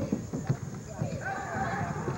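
A basketball being dribbled and sneakers thudding on a hardwood court, in irregular low thumps, over background crowd voices.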